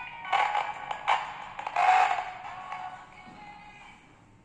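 Music played through a small loudspeaker fed by an LED light-beam audio link. It comes in loud bursts and then fades away, as the sound drops out when the LED moves out of the receiver's line of sight.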